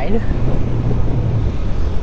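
Steady low rumble of wind and rolling road noise while riding a fat-tire folding e-bike on pavement, with a faint low hum rising and fading in the middle.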